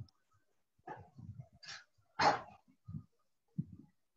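A dog barking, with one loud bark a little over two seconds in and fainter, shorter sounds around it.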